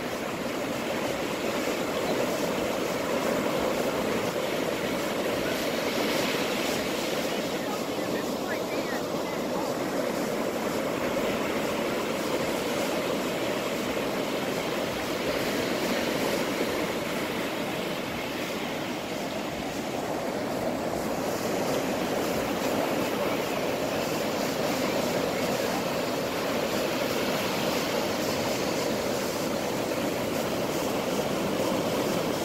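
Ocean surf breaking offshore and washing up the sand: a steady rush that swells and eases as each wave comes in.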